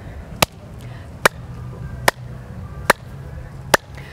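Sharp clicks at an even, slow beat, a little faster than one a second, five in all, over a low steady hum.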